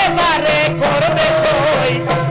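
Baul folk song: a man sings a long, wavering line with a glide near the start, over a plucked dotara, a small hand drum and small hand cymbals keeping a fast, steady beat.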